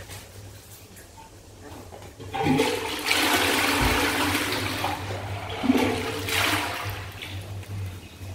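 Dual-flush toilet flushing: a rush of water starts a little over two seconds in, runs steadily for a few seconds and tapers off near the end, with a dull thump partway through.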